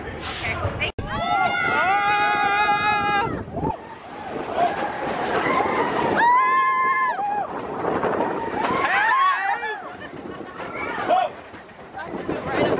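Riders on the Big Thunder Mountain Railroad coaster screaming and whooping while the train runs. There are long held screams about a second in and again about six seconds in, with shorter yells over the noise of the ride.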